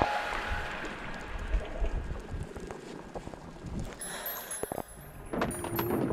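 Muffled water noise from an action camera held under the sea: a low, even rush with scattered clicks and splashes from swimmers. Music fades back in near the end.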